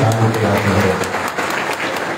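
Audience applause in a hall: many hands clapping together, gradually fading.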